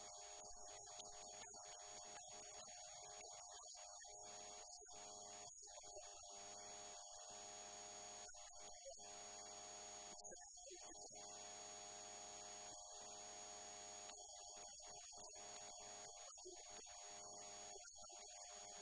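Near silence: a faint, steady electrical hum with light hiss on the recording.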